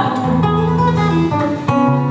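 Acoustic guitar played solo, plucked notes over a low bass note that is held for about a second.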